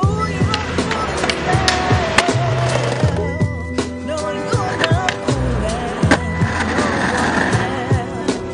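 Hip-hop instrumental beat with a heavy bass line, with skateboard sounds mixed over it: wheels rolling and sharp clacks of the board.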